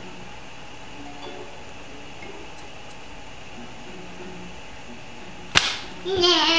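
A single sharp crack about five and a half seconds in, sudden and loud, dying away within a quarter second, over a faint low background.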